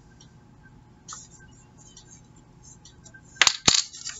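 Faint paper and table rustling, then two sharp plastic clicks close together about three and a half seconds in, as a small round ink pad is picked up and its case snapped open.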